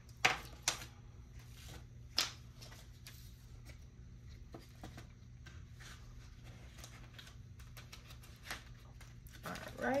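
Paper cards and dollar bills handled on a tabletop: a few brief rustles and taps in the first two seconds or so, then faint small handling sounds over a low steady hum.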